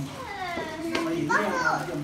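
Children's voices calling out and squealing, with a long high falling cry about half a second in and another high cry soon after.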